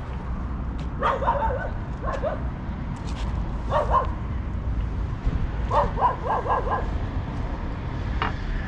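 A dog barking in short yips: a few scattered barks, then a quick run of four around six seconds in, over a steady low background rumble.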